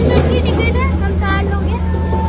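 A girl speaking in a high voice over a steady low rumble.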